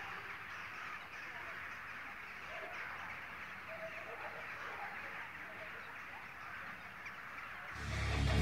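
Quiet outdoor ambience: a steady faint hiss with a few faint distant bird calls. Guitar music comes in right at the end.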